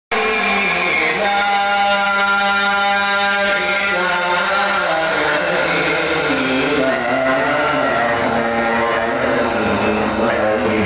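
Melodic Qur'anic recitation by a male reciter, amplified through a microphone: one long held note for about four seconds, then a winding, ornamented melody.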